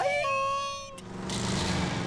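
A held sung note trails off. About a second in comes a sharp click, then a cartoon van whooshes past with a low engine rumble.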